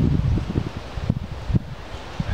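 Wind buffeting the camera microphone in uneven low gusts, with some rustling, easing a little in the second half.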